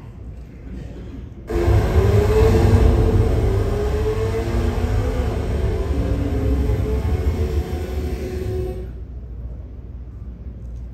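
Soundtrack of a teaser video played through the hall's loudspeakers: a loud, deep rumble with a slowly rising tone, starting suddenly about a second and a half in and cutting off near the ninth second.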